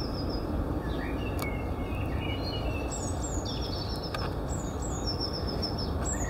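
Small birds chirping over steady low outdoor background noise: repeated short, falling chirps, with a few lower warbling calls in the middle. A couple of faint clicks are heard.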